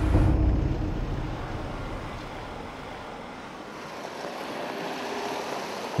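A 4x4 driving over rough steppe: a low engine and road rumble fades over the first couple of seconds, leaving a steady wind and tyre noise that grows slightly louder toward the end.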